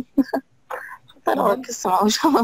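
Speech: a few short vocal sounds at the start, then talking resumes about two-thirds of the way in.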